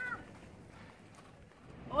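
A short pitched vocal sound right at the start, then faint, even background noise; a woman begins speaking at the very end.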